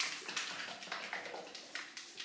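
Small plastic hair-dye bottle shaken hard by hand to mix the dye: a quick run of soft rattling clicks, about four a second, getting quieter toward the end.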